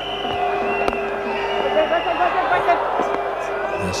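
Cricket stadium crowd noise heard through the broadcast: many voices chanting and cheering together, with a steady held tone running through most of it. A single sharp knock comes about a second in.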